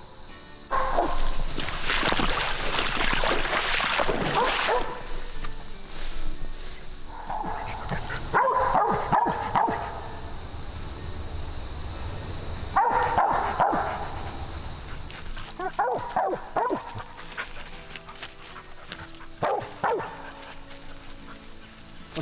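Mountain cur barking treed at the base of a tree, in bouts a few seconds apart: the dog's sign that it has an animal up the tree.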